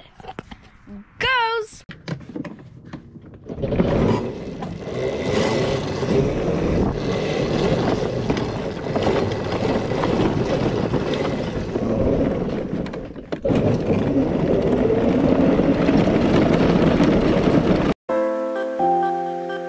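A ride-on Power Wheels toy converted to a 48-volt, 1800-watt electric motor being driven over a gravel track, starting about three and a half seconds in. A loud, steady rush of tyre and wind noise, with the drive's pitch rising and falling with speed, dips briefly near the end.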